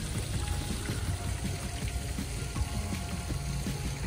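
Fountain water falling and splashing in a steady rush.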